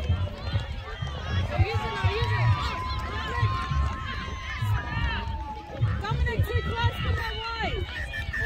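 Overlapping shouts and calls from players and spectators at a children's touch rugby game, with one long held call in the middle. Wind rumbles on the microphone throughout.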